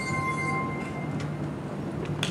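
Glass harp, wine glasses tuned with water and sounded by wet fingers rubbing their rims, holding two steady high notes, the lower about an octave below the upper. The lower note stops about half a second in and the upper one about a second in, as the piece ends.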